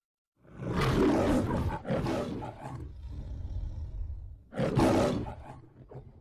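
The Metro-Goldwyn-Mayer logo lion roaring: two loud roars close together, a lower growl, then a third loud roar near the end.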